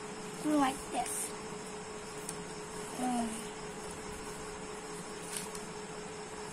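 Paper being creased and folded by hand, faint rustles and ticks, under a steady hum, with short wordless voice sounds about half a second in and again about three seconds in.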